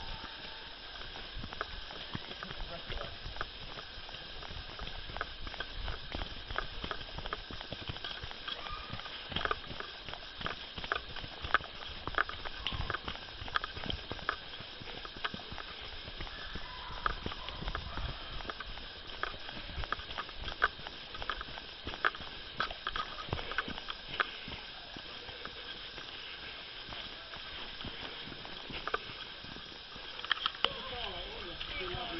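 Running footsteps on a woodland dirt trail, heard as a run of irregular thuds about one to two a second, with rustling and handling noise from a camera carried by a runner.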